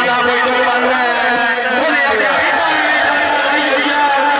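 A man's voice commentating on the match, loud and continuous, with long drawn-out calls.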